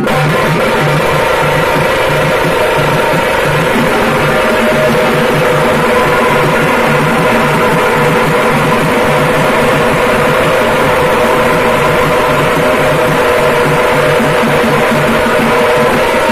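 Group of tamate frame drums beaten with sticks in a loud, fast, continuous rhythm, with a steady held tone sounding over the drumming.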